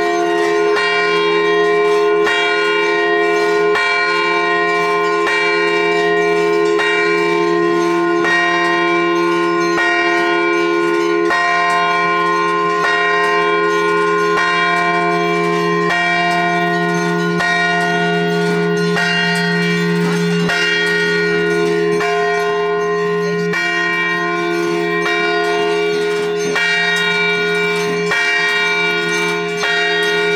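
Temple bells rung by devotees pulling on bell ropes, ringing loudly and continuously, with fresh strikes about once a second layering over the sustained ring.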